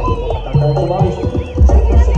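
Live Javanese percussion ensemble music for a barongan dance: rapid drum strokes and a busy struck-metal melody, with one deep gong-like stroke about half a second in. A high wavering melodic line runs above.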